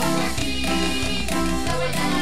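Cumbia band playing live, with sustained melodic notes over a steady, evenly spaced dance beat.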